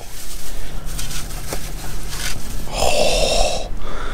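Thin plastic carry-out bag rustling and crinkling as takeout food containers are lifted out of it, over a steady low hum that drops away after about two and a half seconds. A short breathy hiss comes about three seconds in.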